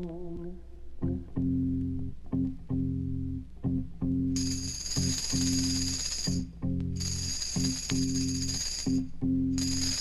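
Instrumental passage of 1970 folk-psychedelic rock: after a held note fades, a repeating riff of short low notes starts about a second in, and a high jingling percussion joins about four seconds in.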